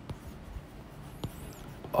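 Stylus writing on a tablet's glass screen: faint scratching with a couple of light taps as the tip meets the glass.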